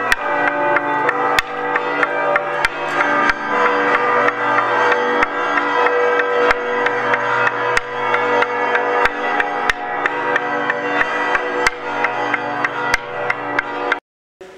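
Toaca, the long wooden semantron of Romanian Orthodox monasteries, struck with a wooden mallet in an uneven rhythm that grows quicker and denser in the second half, calling to the Resurrection service. Steady ringing tones sound beneath the strikes throughout.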